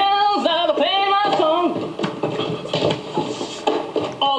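A man singing without backing, holding long notes that bend in pitch over the first second and a half, then a looser, less sustained stretch of voice.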